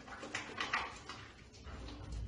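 Soapy hands rubbing and lathering together, faint soft swishing and squelching, with a few clearer swishes in the first second that then fade.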